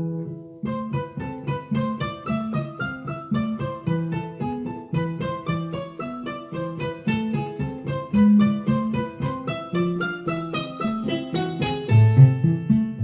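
A Yamaha digital piano played with both hands: a steady run of separate notes in a pentatonic Ethiopian melody over lower bass notes.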